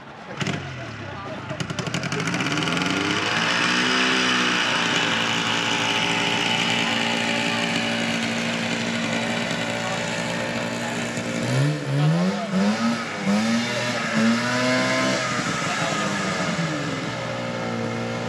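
A snowmobile engine starts about half a second in, catches and revs up, then settles into a steady run. About two thirds of the way through the throttle is blipped four or five times in quick succession, and then the engine goes back to running steadily.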